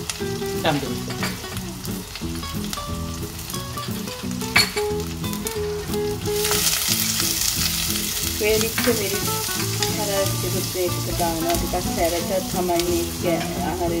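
Curry leaves, chillies and spices frying in oil in a clay pot, sizzling steadily while a wooden spatula stirs and knocks against the pot. The sizzle grows louder about six seconds in.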